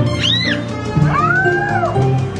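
Two cat meows, each rising and then falling in pitch, the second longer and lower, over background music.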